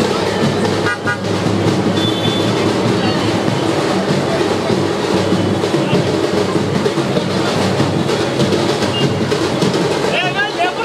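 Loud, steady din of a crowded street procession, with music and horn-like tones mixed into the crowd noise.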